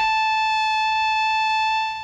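Moog synthesizer oscillator sounding a square wave: one steady, unchanging high tone rich in overtones, cutting in suddenly and dropping in level just before the end.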